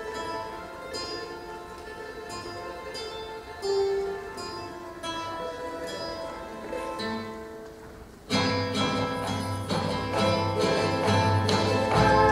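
Andean folk ensemble music: guitar and charango play a quiet plucked introduction, then about eight seconds in the whole group comes in much louder, with quenas joining over the strings and a bombo drum.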